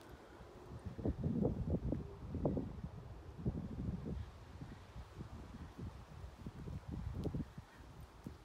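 Wind buffeting a phone's microphone in gusts, a low rumble that swells and drops, strongest in the first few seconds.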